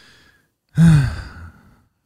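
A man sighing into a podcast microphone: a fading breathy exhale, then a louder voiced sigh falling in pitch about a second in.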